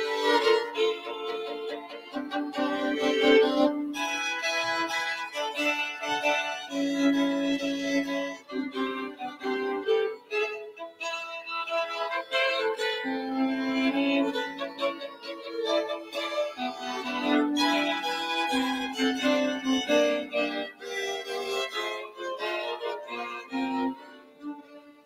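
Violin played with the bow in a classical piece, the notes moving and changing constantly.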